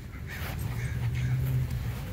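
Jack Russell terrier panting as it pulls on the leash, over a low rumble.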